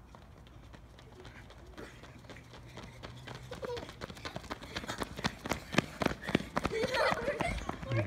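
Footsteps of several children sprinting on an asphalt street, a fast run of slaps that grows louder as the runners close in over the last few seconds.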